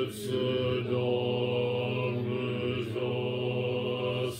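Zen Buddhist chanting in a steady low monotone, held almost on one pitch with brief breaks between phrases.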